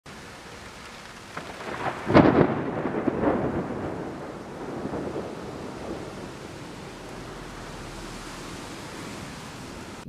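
Thunderstorm: steady rain hiss with a loud thunderclap about two seconds in, rumbling away over the next few seconds before the rain carries on alone.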